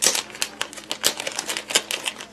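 Plastic packaging handled close to the microphone: irregular crinkling and sharp clicks, several a second, as a bucktail packet is picked up and worked.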